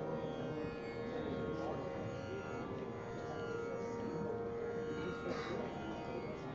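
Tanpura drone: plucked strings ringing in a steady, unbroken drone of held tones.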